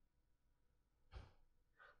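Near silence with room tone, broken about a second in by one short breath out from a person, and a faint intake of breath just before speech begins.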